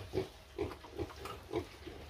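Pigs grunting: four short, low grunts about half a second apart.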